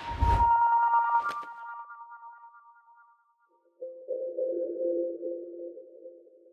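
Logo sting sound effects: a deep boom with a bright ringing chime tone that fades away over about two seconds, and a short click about a second in. After a brief gap, a low humming synth tone on two pitches starts near four seconds in and holds.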